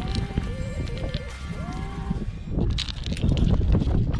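Background music with a melody for about the first half, then short metallic clicks and rustling handling noise as wired climbing nuts and carabiners are sorted and a nut is fitted into a rock crack.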